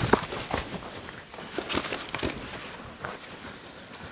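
Irregular footsteps and scuffing in loose arena sand around a horse, with a few sharp clicks and knocks at uneven intervals.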